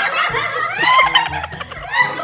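A group of women laughing loudly together, with one high laugh rising in pitch about halfway through.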